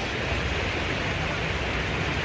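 Steady, even rushing noise of water, heard at the edge of flooded ground during heavy rain.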